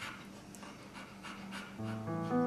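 A dog panting softly with quick, even breaths, about three a second. Music comes in just before the end.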